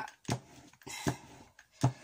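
Rubber brayer being rubbed down to clean off alcohol ink, with a few soft knocks of the roller against the work surface.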